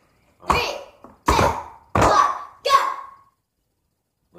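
Loud voices, a child's among them, shouting four times in even succession about two-thirds of a second apart.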